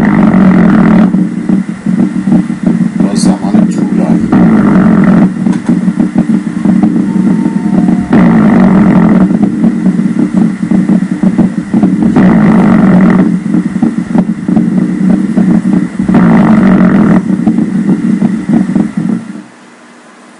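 EMG loudspeaker audio of a very long myokymic discharge: a continuous low buzz from the same motor unit firing repetitively in bursts. It swells into louder, brighter surges about every four seconds and cuts off suddenly near the end.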